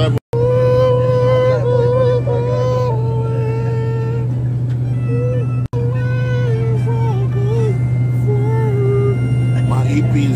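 A man's voice drawing out long held notes without clear words, over the steady low drone of a private jet's cabin in flight. The sound cuts out briefly twice.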